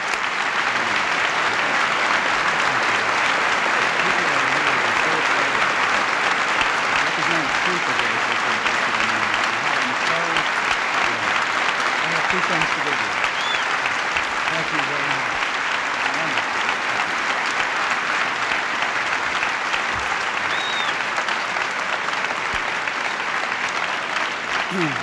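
A large audience applauding steadily in a hall, with scattered voices in the crowd mixed into the clapping.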